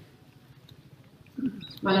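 A woman's speech through a podium microphone and PA pauses: low background noise for over a second, then a short vocal sound and her voice picking up again near the end.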